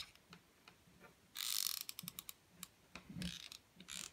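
Hot glue gun's trigger squeezed, its feed mechanism ratcheting in a quick run of clicks for about half a second, about a second and a half in, with a few lighter clicks and handling sounds around it.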